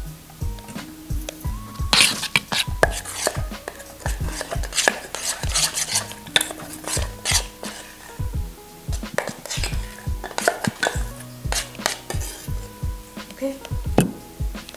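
A metal spoon clinking and scraping against a stainless steel bowl while a mixture is stirred, in quick irregular strokes through most of the stretch, over background music.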